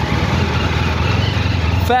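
Motor vehicle engine running with a steady low rumble under outdoor road noise. A voice comes in near the end.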